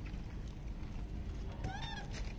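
A rhesus macaque gives a single short, high-pitched squealing call near the end, rising and then falling in pitch, amid the troop at feeding.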